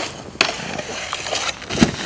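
Snowboard knocking against a metal handrail and landing on snow: two sharp knocks, about half a second in and near the end, the second louder with a dull thud. Steady wind noise on the microphone runs underneath.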